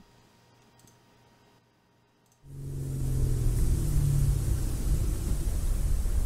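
Near silence, then about two and a half seconds in a car's engine and road noise fade in and hold steady as a low rumble.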